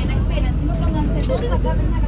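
Steady low rumble of a coach bus engine heard from inside the passenger cabin, with voices talking over it.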